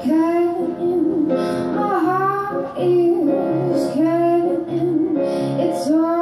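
A woman singing a melody live into a microphone, accompanying herself on piano, with a low note pulsing about twice a second under the voice in the second half.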